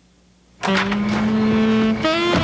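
A brief drop to quiet at a cut into a commercial break. About half a second in, a commercial's soundtrack starts abruptly with steady, held low tones.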